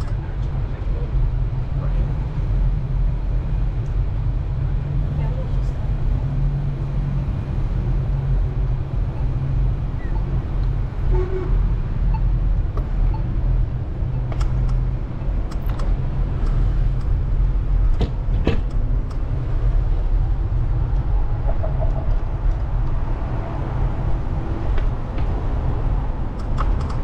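Steady low wind rumble on the microphone of a camera riding on a moving bicycle, over faint city street noise, with a few sharp clicks midway.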